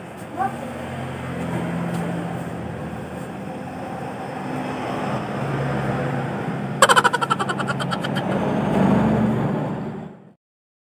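Continuous low, wavering hum of motor traffic, with a brief rapid rattle of clicks about seven seconds in.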